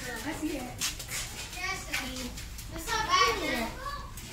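Children's voices and chatter from people close by, with no clear words.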